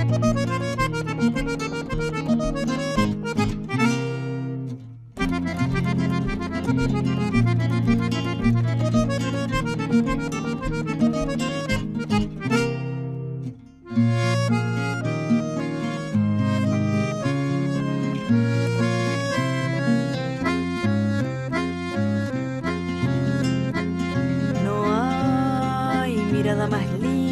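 Folk instrumental of accordion with acoustic guitars. The music drops out briefly twice, about five seconds in and again about thirteen seconds in. A woman's singing voice comes in near the end.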